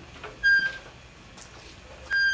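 The hand-turned loading wheel of a beam-bending test machine squeaks once, briefly and high-pitched, about half a second in, as the load on a wooden test beam is raised.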